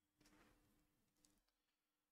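Near silence: room tone with a faint steady hum and one tiny click.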